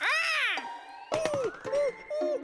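A cartoon character's meow-like vocal cry that arches up and then down in pitch, followed about a second later by a second, shorter falling cry, with a thin tone sliding upward beneath it.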